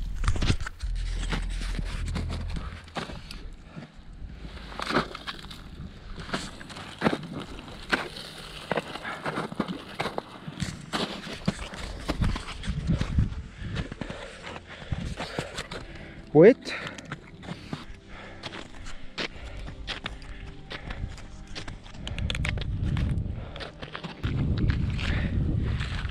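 Irregular crunching footsteps in deep snow, with wind buffeting the microphone in the first few seconds and again near the end. A short rising sound stands out about halfway through.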